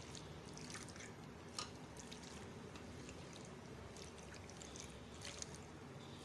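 Faint wet squishing of boiled penne being stirred through sauce in a steel frying pan with a plastic spatula, with a few light taps of the spatula on the pan.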